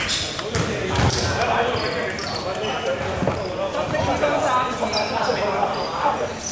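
Basketball game in a gym: a ball bouncing on the court, short high squeaks of shoes, and players' voices, echoing in the hall.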